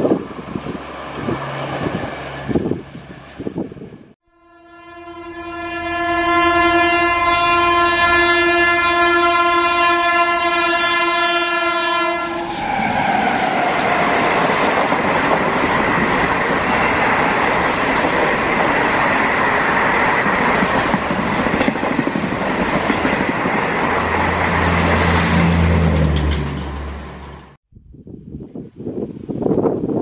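Indian Railways express train running through at speed: the tail of a train passing, then after a cut an electric locomotive's horn sounding one long steady blast of about eight seconds, followed by the coaches passing close by with a loud, even rolling noise of wheels on rails for about fifteen seconds.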